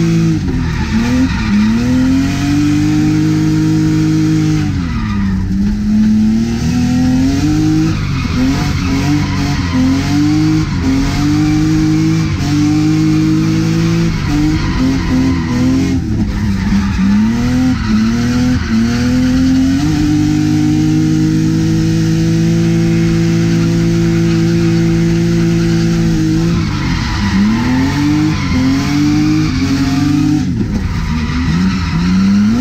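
A BMW drift car's engine, heard from inside the cabin while drifting. Its revs sweep up and down again and again and are held at a steady high pitch for about six seconds in the second half, with tyres squealing and skidding.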